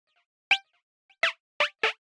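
Synth1 software synthesizer playing four short, zap-like notes, each with a quick falling pitch sweep, the last three in close succession. Much fainter short notes repeat about twice a second underneath.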